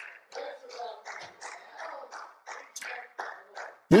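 A few people in a small congregation clapping, about four claps a second, through the pause.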